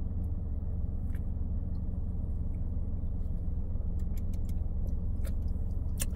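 Steady low rumble of a car's engine idling, heard from inside the cabin, with a few faint clicks from sipping at an aluminium drink can.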